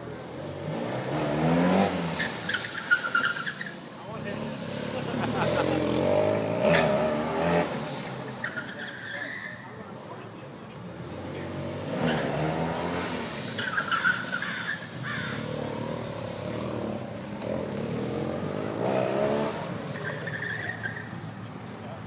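BMW RT-P police motorcycle's boxer-twin engine revving up and dropping back again and again as it is ridden hard through tight cone turns, with short tire squeals between the revs.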